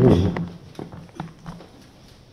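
A man's voice trailing off, then a few soft clicks and knocks of a handheld microphone being handled, about half a second apart.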